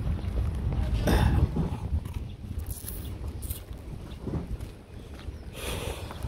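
Wind buffeting the microphone of a handheld camera, loudest in the first second and a half and then easing, with a few brief rustles.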